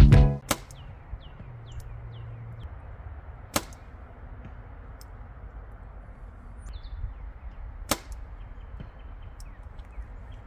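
Compound bow being shot: two sharp cracks of the string release, about four seconds apart, with faint bird chirps in the quiet between. A short last bit of guitar music stops right at the start.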